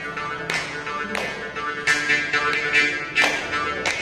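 Morching (South Indian jaw harp) twanging a steady drone on one pitch, its tone shifting rhythmically, punctuated by sharp percussive strokes about every two-thirds of a second.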